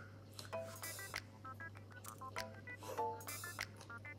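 Light background music made of short, bell-like plinking notes that hop from pitch to pitch, with a few sharp clicky accents.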